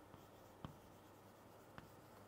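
Faint chalk writing on a chalkboard, with two light taps of the chalk, about two-thirds of a second and nearly two seconds in.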